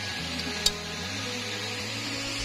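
A single sharp click about two-thirds of a second in, over a low steady hum with a few faint held tones.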